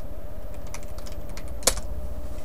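Computer keyboard typing: a few scattered keystrokes, with one sharper, louder key press near the end. A faint steady hum runs underneath.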